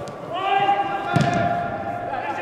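A player's long, drawn-out shout on one pitch, echoing in a large indoor football hall. A ball is kicked about a second in.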